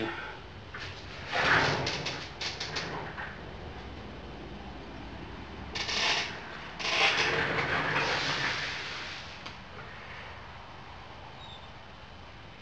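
Handling and movement noises of someone leaving a table and fetching a sample: a run of small clicks and knocks early on, then a short rustling noise about six seconds in and a longer one from about seven to nine and a half seconds, fading to low room hiss.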